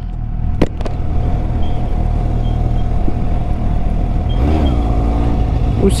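Kawasaki Z800 inline-four engine running steadily at cruising speed, with two sharp clicks a little under a second in: the clicking noise the rider hears while riding and puts down to the trailer being towed ahead rather than her own bike.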